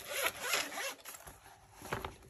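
Zipper of a fabric zip-around pencil case being pulled open, a rapid rasp through about the first second, then a short click near the end.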